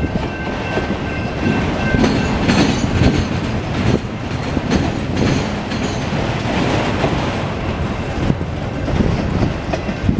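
Freight train of autorack cars rolling past at close range: a steady rumble with wheels clattering on the rails.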